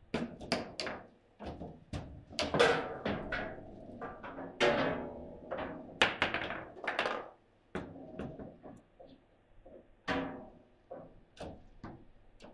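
Table football game in play: the ball struck by the plastic figures on the rods and knocking off the table's sides, a quick run of sharp knocks that thins out after about seven seconds.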